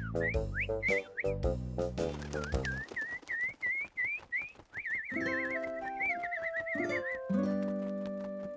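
Cartoon background music: a bouncy rhythm for the first three seconds under a run of quick whistle-like chirps, then a warbling trill and a few held chords.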